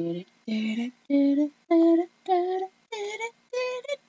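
A woman singing a short wordless tune: about seven brief held notes in a row, each moving to a new pitch, with a laugh near the end.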